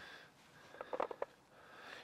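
Faint breath through the nose near the start, then a few soft short ticks about a second in, close to a lapel microphone.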